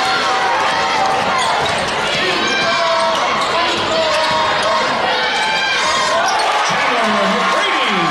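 Basketball dribbled on a hardwood gym floor during live play, over a steady din of crowd voices and shouts in a large gym.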